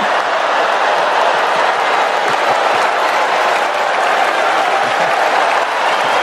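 Large audience applauding steadily in response to a punchline.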